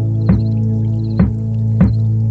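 Background music: a steady held low chord with three soft struck notes over it.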